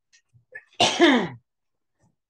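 A man coughs once, loudly and sharply, about a second in; the cough lasts about half a second.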